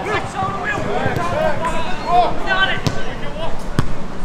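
Voices calling out on a football pitch, with two sharp thuds of a football being kicked about a second apart near the end.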